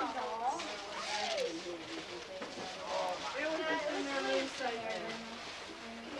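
Several people talking over one another in indistinct chatter, with no clear words.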